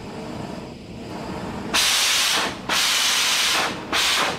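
Oxy-fuel cutting torch releasing gas through its tip in two loud hissing bursts, each about a second long, starting a little under halfway through.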